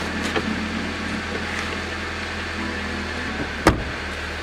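Parked car's engine idling with a steady low hum, broken by a light knock at the start and a sharp knock near the end.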